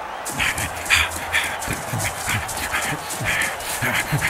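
Heavy, rhythmic panting breaths, about two a second, from a running cartoon footballer.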